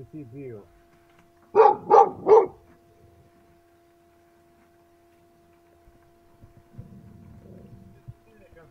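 A dog barking three times in quick succession, loud and sharp, over a steady hum. A low rumble follows near the end.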